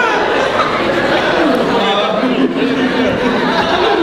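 Speech: a man talking into a microphone over the chatter of a hall audience.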